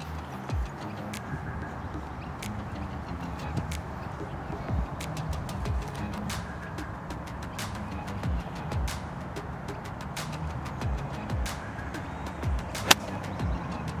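Light background music with a steady pulse. Near the end, one sharp crack of a nine-iron striking a golf ball on a full swing from the fairway.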